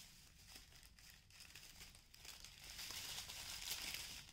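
Faint crinkling and rustling of plastic packaging being handled, with many small scattered crackles, a little louder in the second half.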